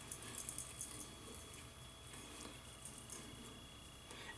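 Near-quiet room tone with a few faint, soft clicks in the first second or so: hands touching the freshly shaved face.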